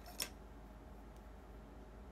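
A single sharp click, about a fifth of a second in, from a small object being handled, then faint room tone.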